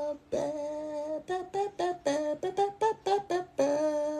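A woman's voice humming a short wordless tune: a held note, a quick run of short notes, then another held note.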